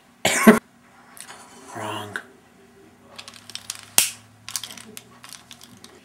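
A man laughing under his breath: a sharp breathy burst near the start and a short voiced laugh about two seconds in. Scattered small clicks and taps follow in the second half.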